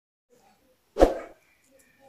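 A single short intro sound effect about a second in, starting sharply and fading within about a third of a second.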